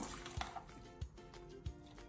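Soft background music, with a few light clicks of a metal tablespoon against a stainless steel bowl as raw chicken pieces are mixed with spices.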